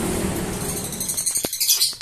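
Steady background traffic noise fading down, then small birds chirping rapidly and high-pitched in the second half, with a couple of sharp clicks.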